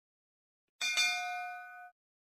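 Notification-bell sound effect: a bell ding about a second in, struck a second time right after, ringing for about a second and then cutting off.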